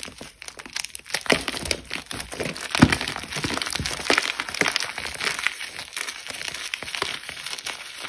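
Dried cornstarch chunks crunching and crumbling as a hand squeezes them. A dense run of small cracks, with one louder crack about three seconds in.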